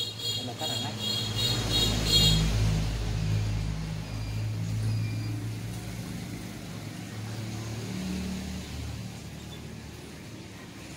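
Low engine rumble of a motor vehicle going by, loudest about two seconds in and then slowly fading away.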